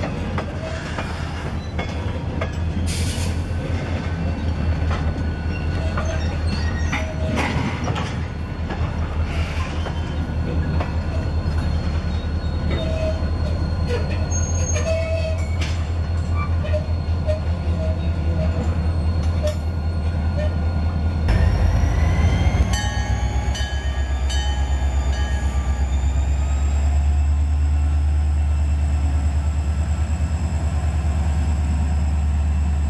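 Freight cars rolling slowly on rails with high wheel squeals and occasional clanks, under a low diesel locomotive rumble. About two-thirds of the way through, the sound changes abruptly to a close diesel locomotive running with a deep, steady engine note and a whine that rises in pitch as it pulls.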